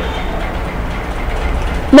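Steady background rumble with a low hum and an even hiss above it, unchanging through the pause.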